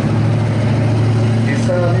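Sherman M4A4 tank's engine running with a steady low drone as the tank drives forward at low speed.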